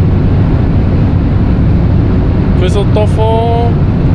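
Steady road and engine noise inside a car's cabin while driving, a loud, unbroken low rumble. A short drawn-out vocal sound comes in about three seconds in.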